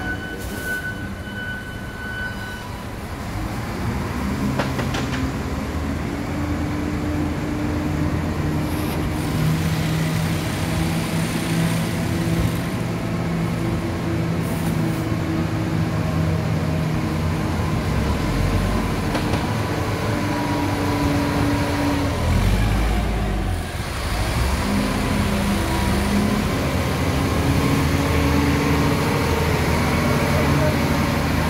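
Factory machinery running steadily, with several humming tones that rise, fall and change from time to time over a continuous mechanical rumble.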